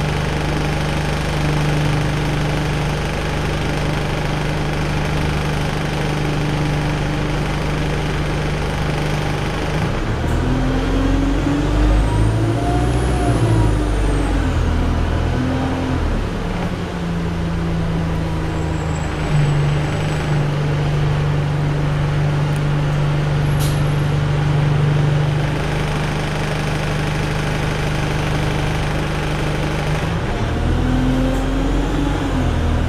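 Interior sound of an Alexander Dennis Enviro200 single-deck bus on the move: its diesel engine running steadily under road noise, with the engine note rising and then falling about ten to sixteen seconds in as the bus speeds up and eases off. A single sharp click sounds near the end.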